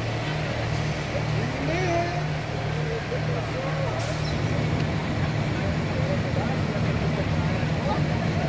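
A fire engine's diesel running steadily at pump speed, a continuous low drone, while it supplies the charged hose lines. Faint voices come and go over it.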